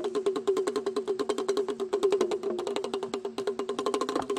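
Damru, the small two-headed hand drum, rattled fast overhead so its beaded cord strikes the heads in an even roll of about a dozen strokes a second, each with the same ringing pitch.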